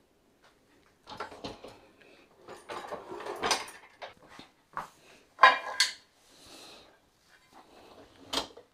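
Dishwasher racks being pulled out on their rollers, with the wire racks rattling and the clean dishes, glasses and cutlery in them clinking. This comes as an irregular run of clicks and knocks that starts about a second in. The loudest clatter is a little past halfway.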